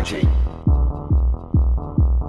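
Electronic dance music: a heavy kick drum with a falling-pitch thump about three times a second over a sustained bass tone, with the treble filtered off.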